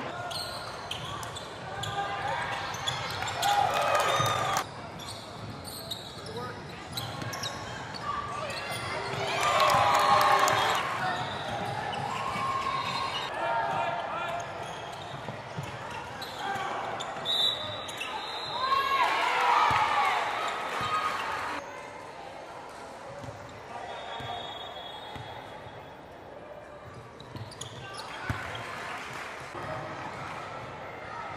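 Basketball bouncing on a hardwood gym floor, with echoing voices and shouts from players and onlookers breaking in a few times.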